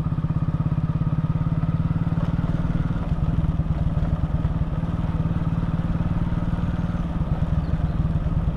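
Motorcycle engine running steadily at cruising speed, heard from the moving bike, with an even, rapid exhaust pulse.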